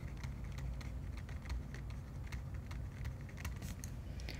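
Light, irregular clicks and taps of a stylus writing on a tablet screen, over a steady low hum.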